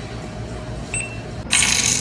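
Coins clinking at a cash register: a short clink about a second in, then a loud jingling rattle of coins near the end.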